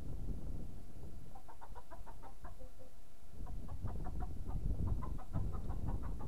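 A bird calling in two rapid runs of short clucking notes, the first about a second and a half in and the second from about the middle to near the end, over a low rumble of wind on the microphone.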